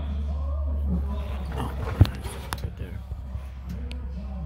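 A steady low hum with faint voices, broken by one sharp knock about two seconds in, followed by a few lighter clicks.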